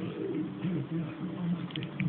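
A few short phone-keyboard typing clicks near the end, over a continuous low, wavering sound.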